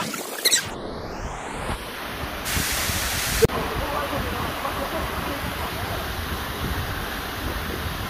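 Waterfall plunging onto rocks, a steady rush of falling water, with wind and spray buffeting the microphone. A sharp knock about three and a half seconds in.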